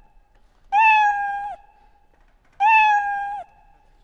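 Scratch's built-in cat meow sound effect played twice, about two seconds apart, the same recorded meow each time: the program's forever loop playing meow in its else branch because the cat sprite is not being touched by the mouse pointer.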